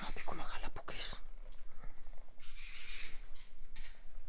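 A person's low voice for about the first second, then a brief soft hiss a little after halfway.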